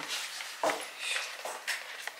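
Wrapping paper and a plastic-fronted gift box rustling and crinkling as they are handled, in several short bursts.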